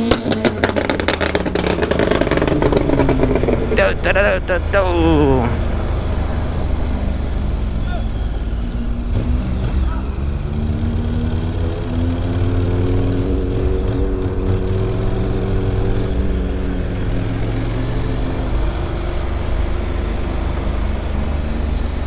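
Honda NC 750 parallel-twin motorcycle engine running on the road under steady throttle, its pitch rising gently for a few seconds, then easing off, with constant wind rumble on the microphone.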